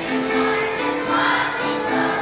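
Young children's choir singing a Christmas song together, moving through a line of held notes.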